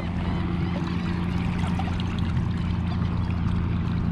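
Shallow water sloshing and trickling around a tarpon held in the water, over a steady low hum.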